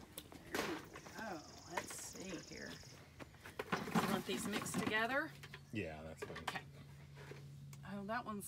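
Quiet, indistinct talking, with a faint steady high tone for about two seconds near the start and a low hum in the second half.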